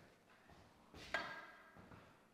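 Interior double door being unbolted and opened: faint handling knocks, then about a second in a single sharp metallic click that rings briefly.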